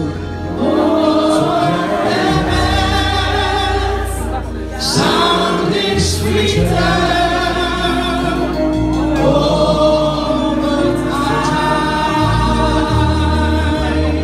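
Gospel choir singing in full voice over deep, sustained bass notes that change every second or two.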